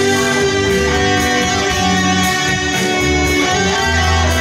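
Electric guitar, a Stratocaster-style solid body, played through an amplifier: held, melodic lead notes with a steady beat behind them.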